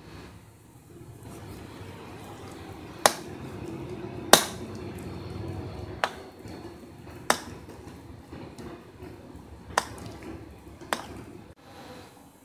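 A spoon stirring thick ground urad dal batter in a bowl: a low steady churning, broken by about six sharp clinks as the spoon knocks the side of the bowl, the loudest a little over four seconds in.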